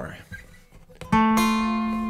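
A single note plucked on a steel-string acoustic guitar about a second in, left to ring and slowly fade.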